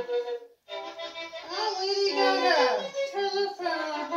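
Violin being bowed, playing wavering, sliding notes, with a brief break about half a second in.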